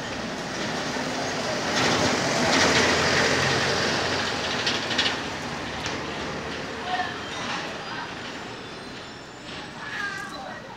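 A truck drives past close by. Its engine and tyre noise swells to a peak a couple of seconds in, then fades into steady street noise, with a few light knocks.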